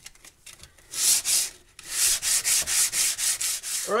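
Sandpaper rubbed back and forth by hand over hardened wood filler on a repaired wooden window frame. A short burst of strokes comes about a second in, then a quick run of strokes at about five a second.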